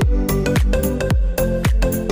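Background electronic dance music with a steady, heavy beat of deep kick drums that drop in pitch.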